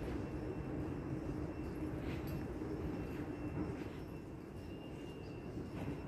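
Steady low hum and rumble of a large indoor hall's building machinery and ventilation, with a held low tone and a few faint ticks about two seconds apart.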